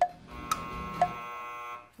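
Game-show timer ticking twice a second, then a steady electronic buzzer that starts about a third of a second in and cuts off abruptly just before the end: the time-up signal ending a one-minute rapid-fire round.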